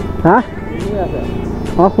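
Motorcycle engine running steadily at low riding speed, under a voice and background music.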